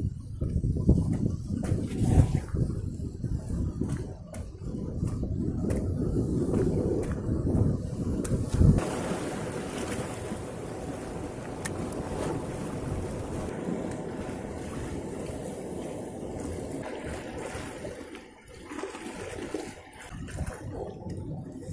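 Seawater washing over shore rocks. For the first nine seconds it comes with low rumbling and scattered knocks on the microphone; after that the surf settles into a steady hiss.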